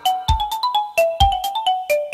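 Background music: a light melody of short, quick notes over a steady beat.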